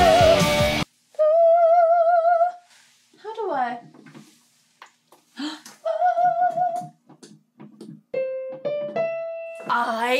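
A heavy metal track with a high male lead vocal cuts off less than a second in. A lone voice then holds a high note with a wide vibrato, near an E5, twice, with sliding vocal sounds in between. Near the end, a few short, steady pitched notes step upward.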